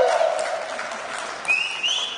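Audience applauding, with a high held note stepping up in pitch near the end.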